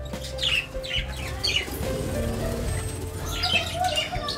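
Budgerigars chirping in the aviary: short, quick falling chirps repeated every half second or so, with a cluster near the end, over soft steady background music.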